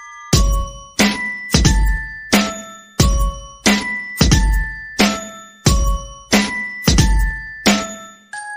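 Background music: bell-like chime tones over a regular deep beat, struck about every two-thirds of a second. The beat comes in about a third of a second in.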